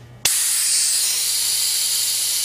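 Compressed-air ejector of a Piab VGS3010 vacuum gripper, fitted with a two-stage COAX Di16-2 cartridge, switching on about a quarter second in with a sudden loud hiss. It then hisses steadily as the suction cup seals on the egg roll and the vacuum builds to about 19 inches of mercury.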